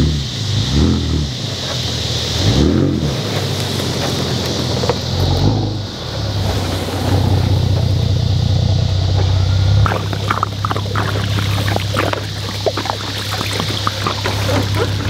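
Pickup truck engine running, revved up and back down twice in the first few seconds, then settling to a steady idle. Light clicks and crackles sound over it in the last few seconds.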